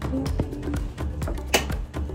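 Background music with a light, tapping beat and short melodic notes.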